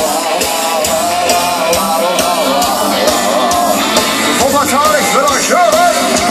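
Live rock band playing at full concert volume, recorded on a phone from inside the crowd: a steady drum beat under guitars and keyboards. A wavering lead melody comes in during the last two seconds.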